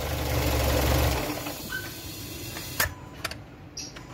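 Renault Symbol 1.2-litre petrol four-cylinder idling, then switched off about a second in, the running sound cutting out abruptly. Two short clicks follow near the end.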